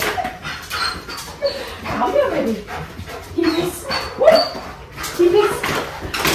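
A young shepherd dog whining and yipping in a series of short, excited calls, some sliding up or down in pitch.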